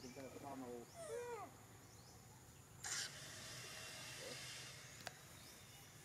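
A macaque's short call that rises and falls in pitch at the start, then a brief rush of noise a few seconds in.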